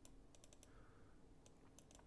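Near silence: room tone with a handful of faint clicks in two small clusters, one in the first half-second and one near the end, from use of the computer at the desk.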